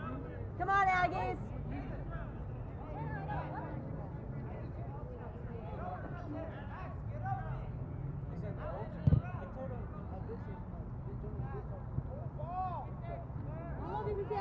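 Players' distant shouts and calls across an open soccer field over a steady low rumble, with one louder shout about a second in. A single sharp thump about nine seconds in is the loudest sound.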